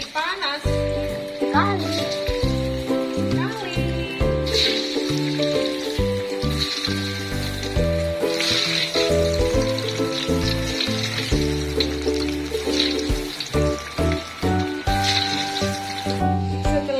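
Background music, loudest throughout, over the sizzle of grated-cassava jemblem balls deep-frying in hot oil in a wok. The hissing flares up a few times as more balls are dropped into the oil.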